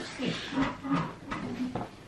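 A man's short, muffled vocal sounds through a full mouth, several in a row, as he bites into and chews a jam doughnut with fish and tartar sauce that he finds horrid.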